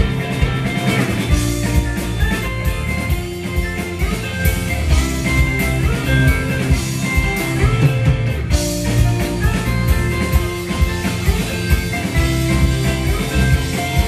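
Live rock band playing an instrumental passage: two electric guitars, bass guitar and drum kit, with no vocals.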